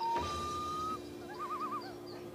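Cartoon bird call: one long whistled note rising slightly for about a second, then a short warbling trill.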